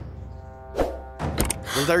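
A car door shuts with a couple of thunks, over a soundtrack of steady background music.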